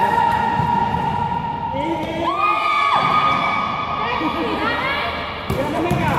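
High voices hold long, drawn-out calls at a steady pitch, stepping up in pitch about two seconds in, in a large echoing gym hall.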